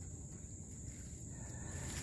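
Insects chirring in a steady high thin tone, with a faint low rumble underneath.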